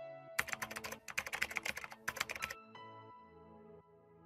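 Computer-keyboard typing sound effect: a quick run of key clicks for about two seconds, over soft music with held notes that carries on after the typing stops.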